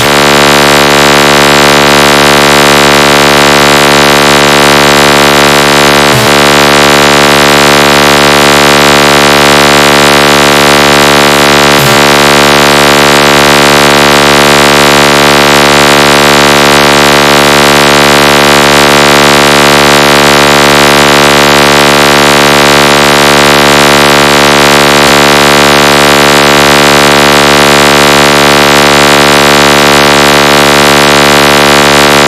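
"Dot ton" from DJ speaker-box competition music: a loud, harsh electronic buzzing tone held steady and unchanging, with no beat.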